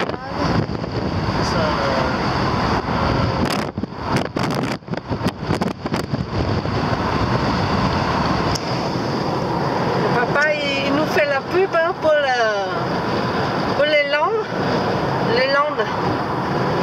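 Car driving along a country road, heard from inside the cabin: steady road and wind noise with gusts of wind on the microphone and a few brief dropouts a few seconds in. In the second half a high-pitched voice talks over it.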